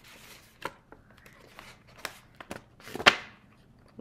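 A kraft paper string-and-button envelope being unwound and opened by hand: faint paper rustling with a few sharp clicks, the loudest about three seconds in.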